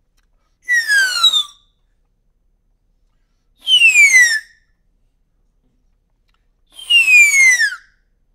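Three falling whistles, each under a second long, made by blowing across the top of a drinking straw that stands in a cup of water.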